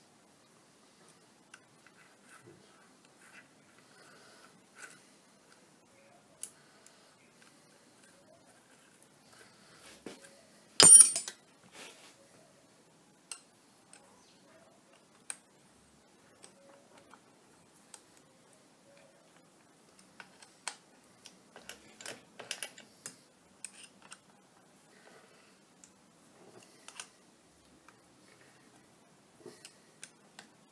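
Scattered metallic clicks and small clunks of a lathe apron's levers and parts being worked by hand, with one loud metal clank about eleven seconds in and a run of clicks later on.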